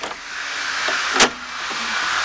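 Red release lever of a wheelchair ramp being pulled to free the fold-flat ramp, with one sharp metallic click about a second in as the latch lets go. A steady hiss of noise runs underneath.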